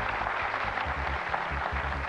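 Studio audience applauding a correct answer, with the game show's music playing underneath.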